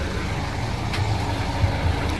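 Mitsubishi Adventure SUV's engine idling with a steady low rumble.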